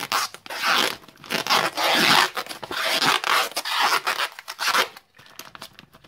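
Newspaper crinkling and tape ripping off the roll as a bundle is wrapped: a run of loud, rough rustling and tearing that eases off about five seconds in, leaving a few light clicks.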